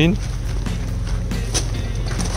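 Range Rover Velar's engine idling, a steady low hum.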